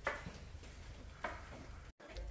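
Quiet background ambience with two faint, short sounds, one at the start and one about a second and a quarter in.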